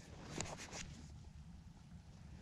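Quiet outdoors with faint handling sounds of fingers rubbing soil off a small dug-up metal button, with one small click about half a second in.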